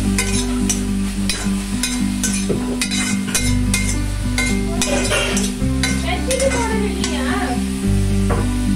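A metal spatula stirring and scraping broccoli in a metal kadai, with irregular clicks and scrapes over the sizzle of frying. Background music with a low, stepping bass line plays throughout.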